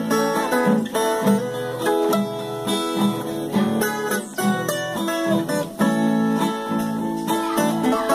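Viola caipira, the ten-string Brazilian guitar, picking a quick melody of plucked notes, accompanied by a six-string acoustic guitar. This is an instrumental interlude with no singing.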